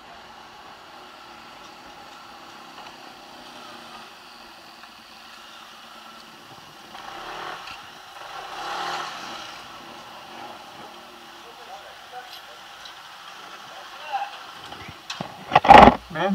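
Yamaha NMAX 155 scooter's single-cylinder four-stroke engine running steadily at low speed, swelling briefly in the middle. A sudden loud burst near the end.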